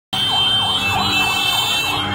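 Fire truck siren sounding in a fast yelp, its wail sweeping down and back up about three times a second, with a steady high tone alongside.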